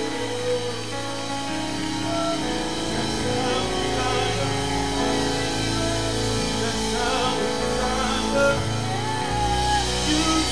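Live worship music from a church band with keyboard, electric bass and drums, with voices singing over it; the low bass notes fill in after about a second.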